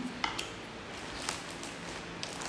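Faint eating sounds: a few short clicks and smacks of chewing and of food being handled, over a low steady room hum.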